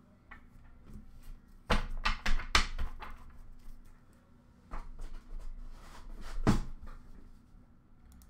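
Handling noises: a quick cluster of sharp knocks and clatters about two seconds in, then single knocks near the middle and again later, as things are moved about on a counter.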